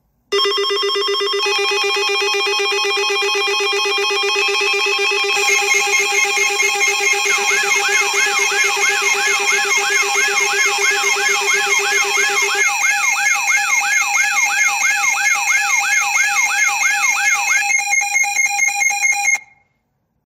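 Synthesized electronic alarm tones, layered: a steady buzzy low tone starts, higher steady tones join one after another, and a wavering siren sweep repeating about two to three times a second joins about 7 s in. The low tone drops out past the middle, the sweep stops a couple of seconds before the end, and the rest cuts off just before the end.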